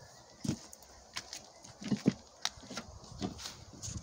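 Scattered light knocks and clicks, about half a dozen, irregularly spaced, from footsteps and handling on wooden decking.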